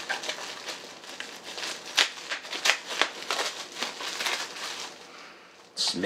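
Plastic bubble wrap crinkling and crackling in irregular bursts as it is handled and unwrapped by hand. It goes quieter shortly before the end.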